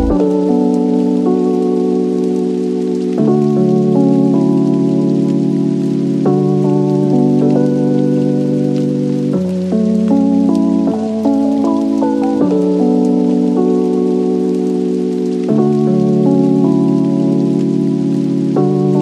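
Slow, calm background music of sustained chords that change every two to three seconds, over a steady rain-like hiss.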